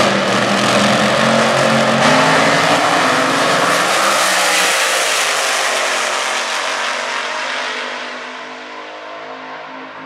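Nostalgia drag-racing dragsters at full throttle on a pass down the strip, a loud, raw engine note. Near the middle the pitch falls, and the sound fades over the last few seconds as the cars move away.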